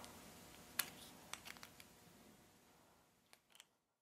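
A handful of faint, sharp clicks as a small metal fill valve is threaded by hand into the plastic base of a Bic lighter, its threads biting into the plastic; the clearest click comes about a second in, and the sound cuts off near the end.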